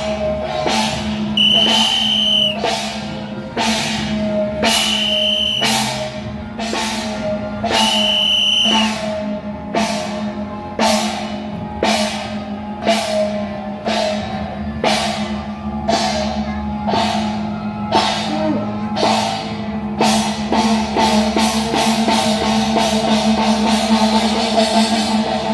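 Temple procession music: drum and gong strikes at an even beat, each gong stroke ringing and falling in pitch, over a steady drone. A high held note sounds three times early on, and the beat quickens near the end.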